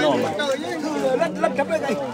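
Voices of several people talking over one another: crowd chatter.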